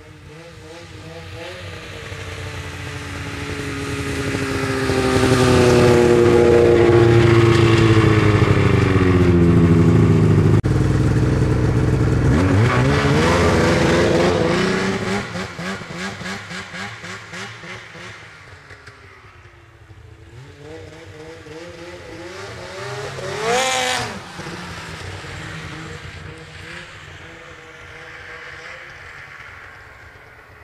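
Polaris XCSP 500 snowmobile's two-stroke engine running through a Sno Stuff Rumble Pack exhaust can. It grows louder over the first several seconds and drops in pitch as it goes by. About twelve seconds in it revs up again, then fades away, with one short, sharp rev near the two-thirds mark.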